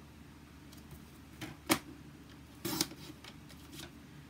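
Sliding-blade paper trimmer cutting a strip of designer paper: a sharp click a little over a second and a half in, then a short scraping burst about a second later, with a few light taps of paper handling around them.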